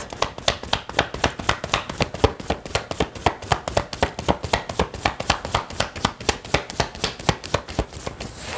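Tarot deck being overhand-shuffled by hand: a quick, even run of card flicks and snaps, about six a second.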